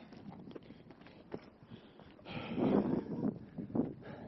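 Footsteps and shoe scuffs on bare granite rock, a string of short irregular steps, with a brief louder muffled voice past the middle.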